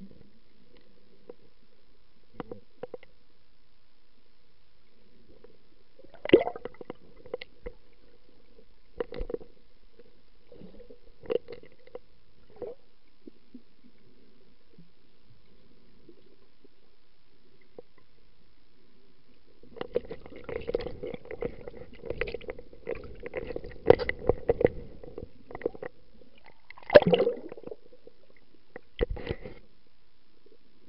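Underwater sound picked up by a snorkeler's camera as the swimmers move over the bottom: a low steady background with scattered clicks and knocks. About two-thirds of the way in comes a busy run of crackling knocks, then a louder knock near the end.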